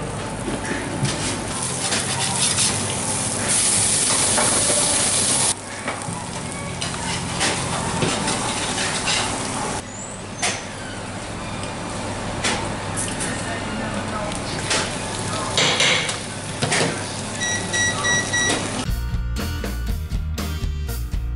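A buttered grilled cheese sandwich sizzling as it fries in a hot pan, with scattered clicks and scrapes of utensils. The sizzling grows louder and hissier for about two seconds, beginning about four seconds in. Music starts just before the end.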